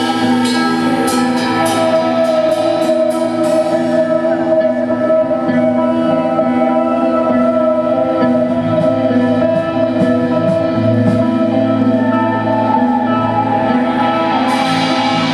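Live blues-rock band playing with electric guitars, bass and drum kit, long held notes ringing over the band. Sharp drum hits come two or three a second over the first four seconds, then drop away.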